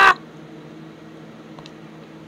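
The tail of a harsh, voiced cough cuts off right at the start, then only a faint steady hum remains, with one tiny click about one and a half seconds in.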